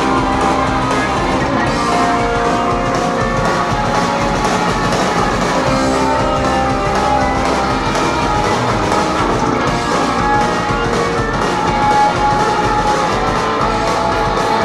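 Punk rock band playing live with electric guitars, loud and continuous.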